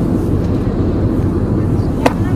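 Steady low rumble of airliner cabin noise from the engines and air system, with no break or change.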